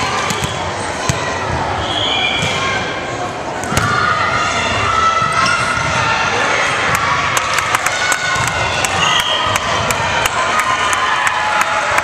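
Volleyball match play on a hardwood gym floor: the ball bouncing and being struck, sharp clicks and knocks throughout, with girls' voices calling out.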